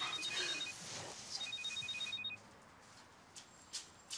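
Mobile phone on a table ringing with a pulsing electronic ring, two rings of just under a second each about half a second apart, then a light knock near the end as the phone is picked up.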